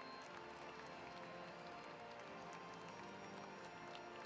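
Faint music with many long held notes, over a light haze of crowd applause.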